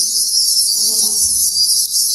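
A loud, steady high-pitched hiss.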